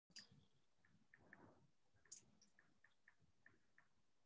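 Near silence: room tone with faint, small, irregular clicks, roughly three a second.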